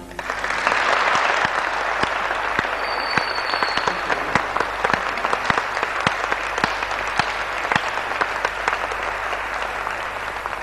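Audience applause in a large hall, breaking out just as the last piano chord dies away and going on at a steady level, with single claps standing out.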